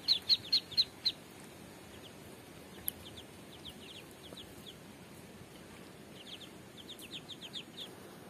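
Domestic ducklings peeping: quick runs of short, high, downward-falling peeps. A loud run of about six comes in the first second, fainter scattered peeps follow, and another run comes near the end.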